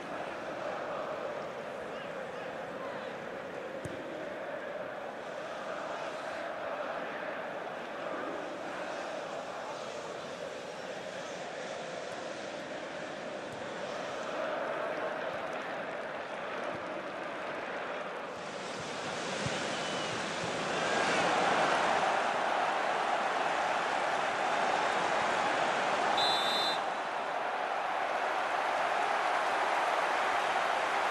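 Football stadium crowd, a steady roar that swells about two-thirds of the way through and stays louder. Near the end comes one short high whistle blast, the referee's whistle for a foul.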